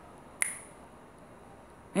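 A single finger snap: one sharp click about half a second in.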